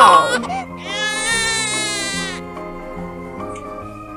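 A newborn baby crying, one long high wail starting about a second in and lasting over a second, over light children's background music.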